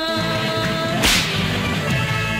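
Old Tamil film song soundtrack: a long held sung note ends about a second in and is cut by a sudden sharp crack that quickly fades, with the orchestra going on underneath.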